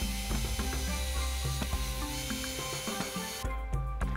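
Cordless drill driving a screw through a long extension bit into a wooden door frame. It runs for about three and a half seconds and then stops.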